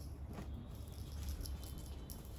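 Cloth rustling as a garment is handled and lifted, with a brief swish about half a second in, over a steady low hum.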